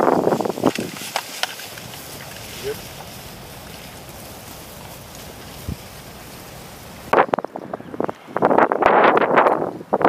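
Tall grass rustling and brushing close to the microphone as a Marine in full kit walks through it. It is loud at the start, drops to a quieter wind-like hiss with a few faint clicks, then comes back loud in the last three seconds.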